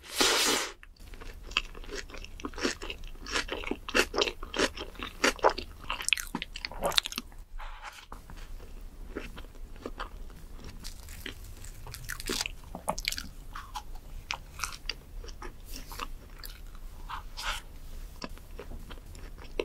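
A person eating close to the microphone: a loud bite right at the start, then steady chewing with many small crunches and mouth clicks.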